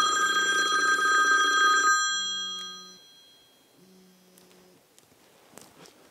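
Incoming-call ringtone from a Bluetooth-paired iPhone, sounding through the Festool SysRock job-site radio's speaker: a steady ringing tone for about two seconds that fades away by about three seconds in, then two short, much fainter low tones.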